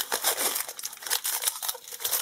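Foil booster-pack wrapper crinkling in the hands, a dense run of rapid crackles as the pack is handled and opened.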